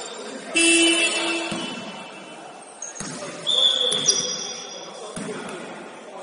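A basketball bouncing on a sports-hall floor, a few single knocks between about three and five seconds in. Voices call out near the start, and a short shrill tone sounds about three and a half seconds in.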